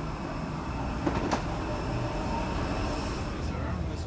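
Steady low mechanical rumble where a jet bridge meets an Airbus A319's boarding door, with a short metallic clank about a second in as a footstep crosses the metal threshold plate.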